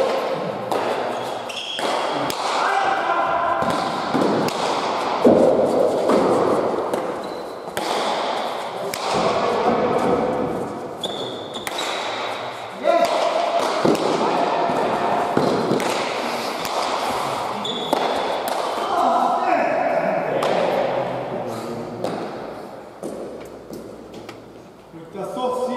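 A Basque pelota ball being struck and smacking off the walls and floor in a rally, a string of sharp impacts echoing around a large indoor court, with voices calling over it.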